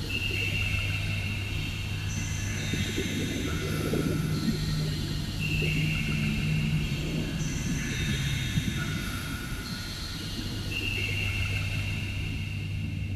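Dark electronic drum-and-bass music in a beatless atmospheric passage. A deep bass note is held under a low rumbling texture, while high synth pad tones change pitch every couple of seconds.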